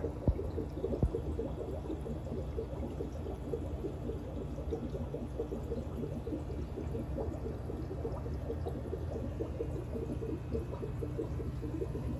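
Steady trickling and bubbling of aquarium water, with a short knock in the first second.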